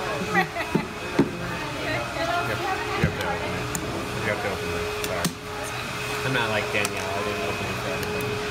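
Indistinct chatter of several people over a steady hum, with a few sharp knocks and rustles from a cardboard coffee carton being handled.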